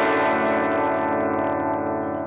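Overdriven electric guitar chord ringing out and slowly fading.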